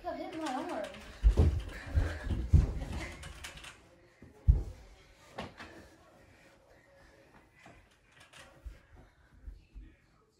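Indoor mini hoop play: several dull thumps of feet and the ball on the floor and the door-mounted hoop, mostly in the first half. A voice is briefly heard at the start, and it turns quieter, with only small scattered knocks, toward the end.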